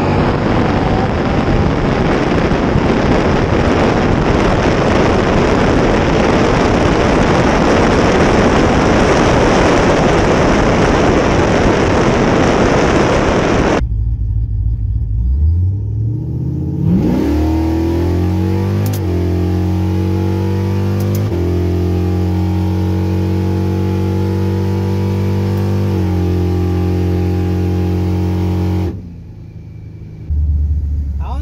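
Supercharged, cammed 5.7 Hemi V8 of a 2011 Ram 1500 R/T at full throttle on a drag-strip pass, buried in heavy wind rush on an outside-mounted microphone. About halfway through, it is heard from inside the cab instead: the engine note rises, then holds steady with a few steps in pitch.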